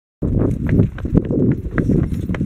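Footsteps of shoes on pavement, about three sharp steps a second, over rumbling handling noise from a handheld camera. The sound starts after a split-second gap of silence.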